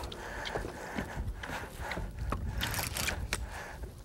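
Wind rumbling on the microphone and water against a small fishing boat's hull, with scattered knocks and clicks and a short hiss about two-thirds of the way through.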